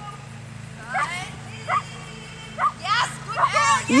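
Small dog barking: several short, high yaps, coming faster near the end.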